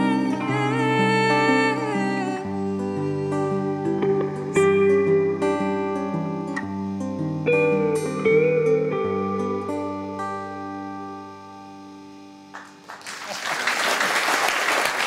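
The closing bars of a slow, tender song played on guitar, with held notes and chord changes that die away. Audience applause breaks out near the end.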